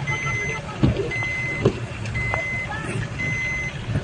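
Electronic vehicle warning beeper giving four steady high beeps, each about half a second long and about one a second, over the low rumble of an engine.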